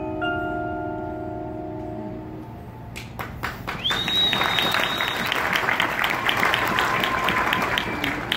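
Mallet percussion (marimba and glockenspiel) chord ringing out and fading over the first couple of seconds. Then audience applause breaks out about three seconds in, with a high whistle from the crowd briefly over it.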